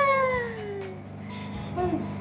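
A toddler's long, drawn-out squeal that slides steadily down in pitch over about a second and a half, followed near the end by brief quieter baby vocal sounds.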